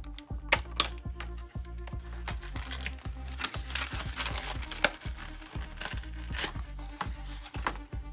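Clear plastic packaging crinkling, with sharp snips and clicks of small scissors cutting the plastic fasteners that hold a fashion doll in its box tray. Background music with a steady beat runs underneath.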